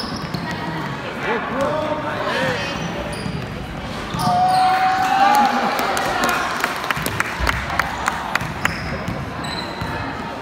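Basketball dribbled on a hardwood gym floor, with a run of bounces about three a second in the second half. Players and spectators shout, loudest just before the bounces.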